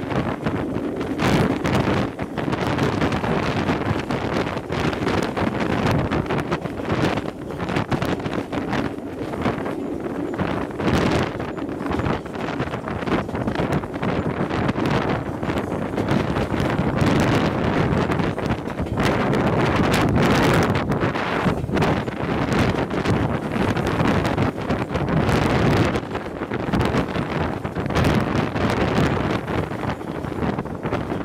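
Wind buffeting a microphone held out of a moving train's carriage window, in irregular gusts over the train's running rumble.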